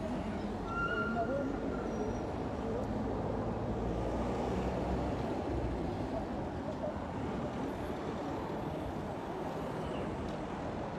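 Indistinct chatter of a waiting crowd over steady street traffic. A heavier traffic rumble swells in the middle.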